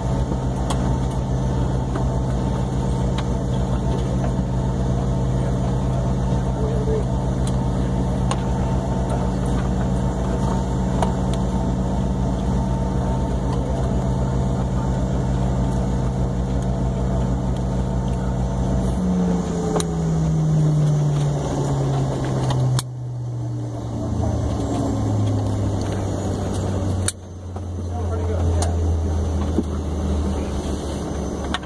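Jet airliner's engines and air system heard inside the cabin: a steady, loud hum that, about two-thirds of the way through, starts falling in pitch in steps as the engines wind down with the aircraft at the gate. Two sudden short dips in loudness come near the end.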